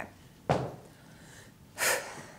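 A person's breathing: a short breath out about half a second in, then a sharper, louder breath in near the end.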